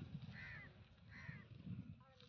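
A bird calling twice: two short, arched calls less than a second apart, over a low background rumble.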